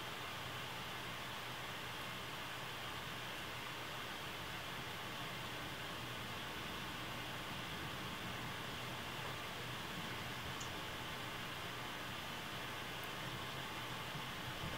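Faint, steady hiss of room tone and recording noise, even throughout, with no distinct sounds standing out.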